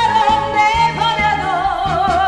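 A woman singing a trot song over backing music, holding long notes with a wide, wavering vibrato.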